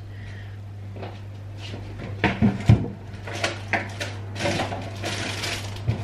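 An electric fan oven switched on, its fan motor setting up a steady low hum, under kitchen clatter of things being knocked and moved about in and around the fridge; the sharpest knock comes about halfway through.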